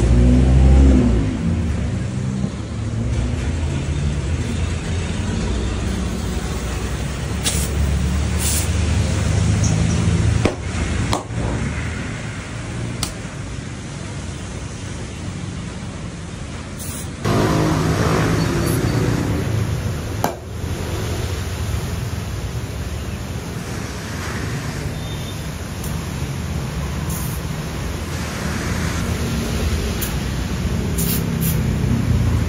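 Air compressor running with a steady low hum while a scooter tyre is inflated through its air hose, with a hiss of air over it. The level jumps and the hum changes pitch about 17 seconds in.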